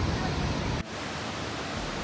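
Whitewater of a mountain waterfall rushing over granite boulders as a steady, loud noise. Less than a second in it changes abruptly, losing its deep rumble and becoming an even hiss.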